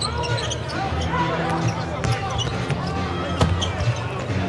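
Basketball game sound on a hardwood court: a ball being dribbled, with short sneaker squeaks and players' shouts over a steady arena hum.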